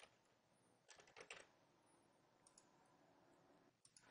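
Faint computer keyboard keystrokes, a short run of key presses about a second in, with a few single clicks either side; otherwise near silence.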